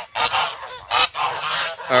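A flock of domestic geese honking, many short calls following close on one another and overlapping.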